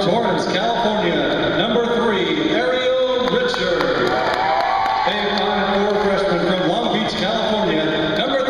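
A voice over the gym's public-address system, drawn out in long held notes that glide down in pitch, as during player introductions.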